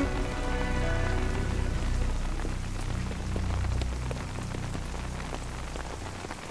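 Steady rain-like hiss over a low, sustained hum, with a few faint held notes of background music early on.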